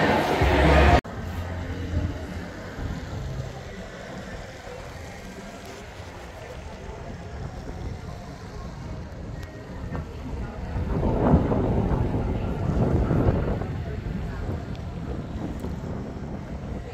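About a second of indoor music and voices cuts off abruptly, leaving wind rumbling on the microphone outdoors. The rumble swells louder for a couple of seconds past the middle.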